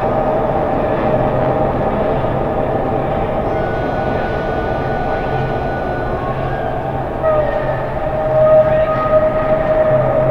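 Subway train running, heard from inside the car: a steady rumble with sustained whining tones over it, one of which bends upward about seven seconds in.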